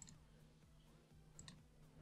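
Near silence with faint computer mouse clicks: one at the start and a quick pair about a second and a half in, as a file is opened from a right-click menu.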